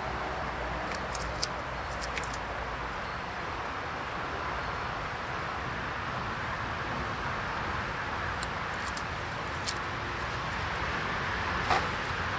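Steady buzzing of honeybees from a queenless colony, swarming around a frame being cleared of bees over a bucket. A few light clicks sound through it, with a sharper knock near the end.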